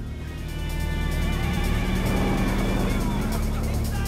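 A car engine runs steadily, heard from inside the car. Film-score music comes in about half a second in and swells over it.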